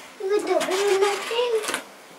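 A young child's voice making one drawn-out, wordless vocal sound with a wavering pitch, lasting about a second and a half.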